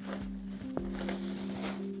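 Background music with steady held notes, over faint rustling of a plastic bag and a single click about three-quarters of a second in as a computer monitor is pulled out of its bag.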